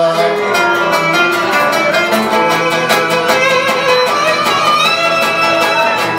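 Cretan lyra playing an instrumental melody over a steady strummed accompaniment of laouto and guitar.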